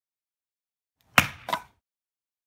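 Hatchet chopping into an upright piece of firewood and splitting it: two sharp wooden knocks about a third of a second apart, the first the louder.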